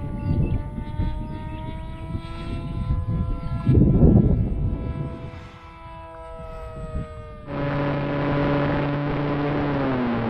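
Electric motor and pusher propeller of an FX-61 Phantom flying wing whining in flight, the tone slowly falling, with wind gusting on the microphone around four seconds in. About seven and a half seconds in the sound switches abruptly to the plane's onboard camera audio: a loud steady rush of air with a low motor hum.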